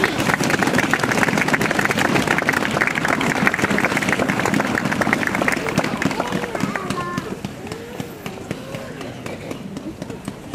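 Audience applause, dense at first and dying away about six seconds in, after which voices are heard talking.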